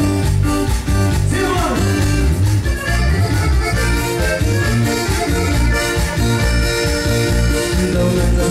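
A regional Mexican band playing an instrumental cumbia passage, the accordion carrying the melody over bass and guitar in a steady dance rhythm.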